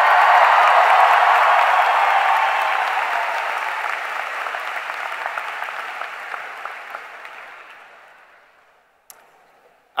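Applause from a large audience, loudest at the start and fading away over about eight seconds, with a single click near the end.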